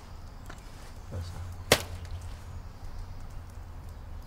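A lettuce fired from an improvised lettuce cannon hitting with one sharp smack a little under halfway through, over a low steady hum.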